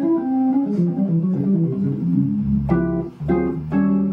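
Hammond organ playing a quick single-note jazz line, then a few short chord stabs over a low sustained bass note in the second half.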